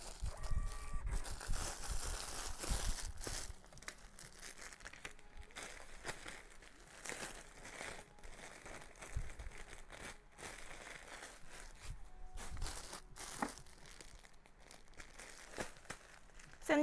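Clear plastic packaging bag holding folded clothes crinkling and rustling as it is handled, with irregular sharp crackles, busiest in the first few seconds.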